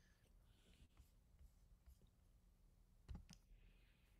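Near silence: room tone with a faint low hum, and two faint clicks a little after three seconds in.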